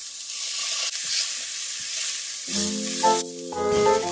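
Chopped onion and garlic frying in a pan, a steady sizzling hiss. Light background music comes in over it about two and a half seconds in.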